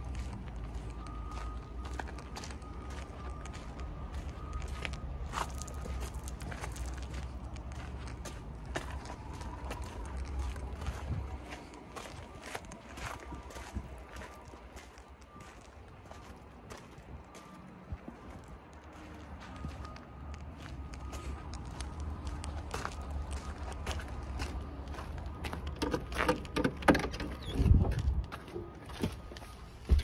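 Footsteps crunching on gravel as someone walks around a parked car, with a low rumble underneath. In the last few seconds come louder thumps and knocks as the car door is opened and someone climbs into the seat.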